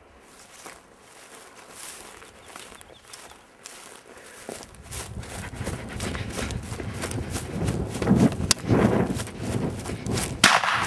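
Footsteps and rustling through dry scrub as the person holding the camera moves quickly through the brush, with handling and rumble noise on the microphone. It grows louder about halfway through, with a sharp snap near the end.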